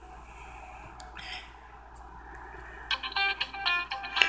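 A Samsung flip phone playing a ringtone melody through its small speaker, starting about three seconds in as a quick run of pitched notes.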